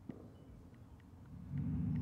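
Faint outdoor low rumble, like distant traffic or wind on the microphone, with a light click just after the start and a few faint ticks. The rumble grows louder over the last half second.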